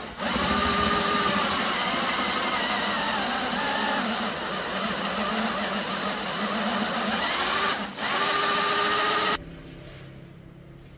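Electric drill running a countersink bit into a wooden board, boring the recess for a screw head. The motor's pitch wavers as the bit cuts, with a short break about eight seconds in, and it stops suddenly near the end.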